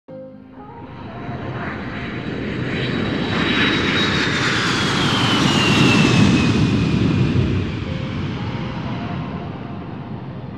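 A jet aircraft flying past: a rushing rumble swells to a peak about six seconds in and fades, with a high whine falling in pitch as it goes by.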